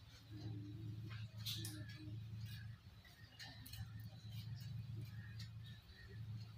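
Low-level room sound: a steady low hum with faint scattered clicks and small handling noises.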